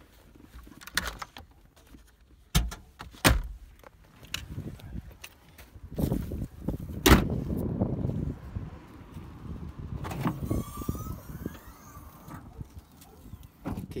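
Car doors and a hatch being opened and shut: a few sharp latch clicks and thuds, the loudest about seven seconds in, amid rustling and handling noise from the phone.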